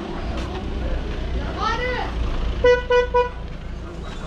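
A vehicle horn sounds three short toots in quick succession a little past halfway, over a steady low rumble of street noise.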